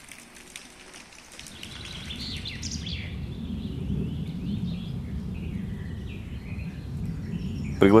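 Outdoor ambience: birds chirping over the first few seconds, then a steady low rumble of outdoor noise that swells a little from about two seconds in.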